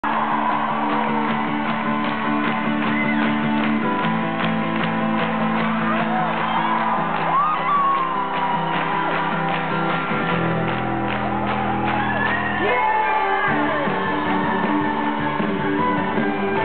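Live acoustic band with acoustic guitar, strings and drums playing an instrumental opening at a steady beat, chords changing every few seconds, with crowd shouts and whoops over it.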